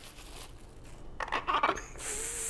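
Plastic cling wrap crinkling as it is peeled off a cut tomato: faint at first, then a short cluster of crackles a little past halfway.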